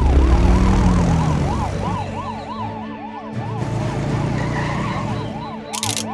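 Cartoon police car siren: a fast rising-and-falling wail, about three or four cycles a second, over a low rumble that is loud at first and fades after about two seconds.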